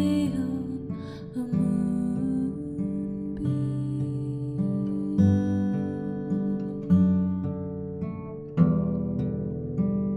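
Music: an acoustic guitar strumming slow chords, with a fresh strum every second or two.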